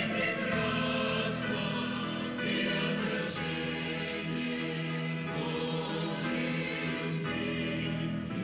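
A mixed church choir of men and women singing a Russian-language hymn about heaven in held, sustained chords. It is an archive recording of the choir, played back.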